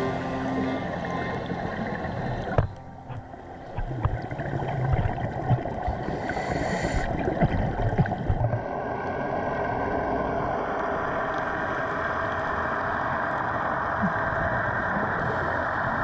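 The song's last notes die away in the first second, then raw underwater audio from the dive camera: a scuba diver's regulator exhaust bubbles gurgling, over a steady underwater hiss.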